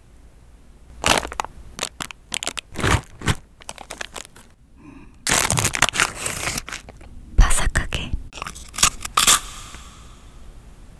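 Close-miked ASMR sounds of Ritz crackers and their plastic sleeve pack: scattered crisp clicks and crackles, a dense stretch of the wrapper crinkling and tearing about halfway through, then sharp cracker crunches near the end.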